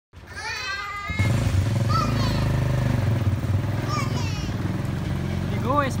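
A motorcycle engine running steadily, starting about a second in, with young children's high-pitched calls over it.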